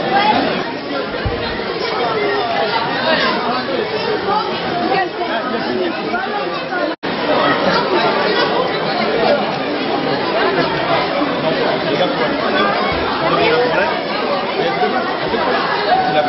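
Many voices chattering at once, overlapping group talk with no single voice standing out. The sound drops out abruptly for an instant about seven seconds in.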